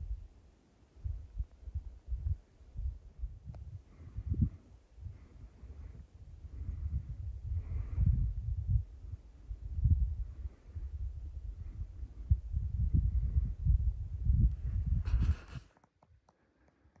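Wind buffeting the phone microphone in irregular low gusts, with a brief rustle of handling just before the end.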